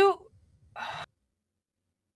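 The end of a spoken word, then a short audible breath, a sigh or sharp intake of air, just under a second in.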